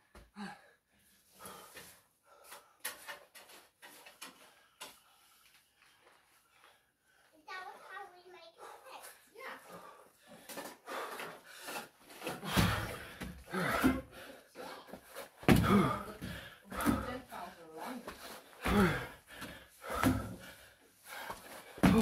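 Feet landing hard on a wooden deck in a series of heavy thumps, about one every second and a half, from a man doing jumps up onto the deck, with noisy breathing between landings.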